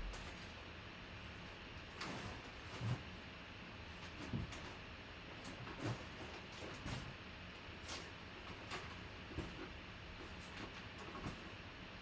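Faint, irregular knocks, clicks and rustles of objects being handled and rummaged through, over a steady background hiss. The loudest knocks come about three and four seconds in.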